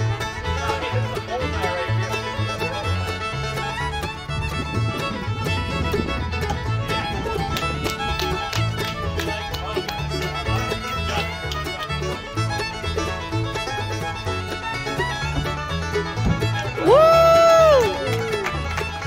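Bluegrass background music with fiddle and banjo over a steady bass beat. Near the end a loud high note rises, holds for about a second and falls away.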